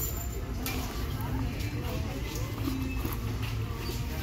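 Store background: faint voices of other people talking at a distance, over a steady low hum.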